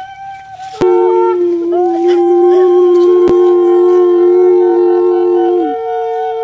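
Conch shells (shankha) blown in long, steady, overlapping notes, a second one joining about a second in after a brief lull; each note dips in pitch as it ends. Two short sharp clicks sound near the first and third seconds.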